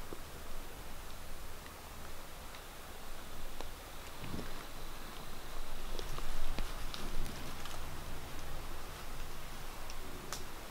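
Rustling and crackling in dry leaf litter on a forest floor at night, louder about six to seven seconds in. A faint steady high tone sounds for a few seconds in the first half.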